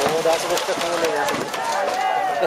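Many voices calling and shouting at once, with scattered sharp claps, as at a baseball game.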